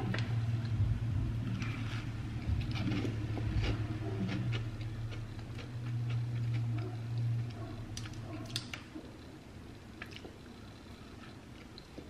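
A person eating a frosted cookie: soft chewing and mouth sounds with scattered faint clicks. A low steady hum runs underneath and stops about three quarters of the way through.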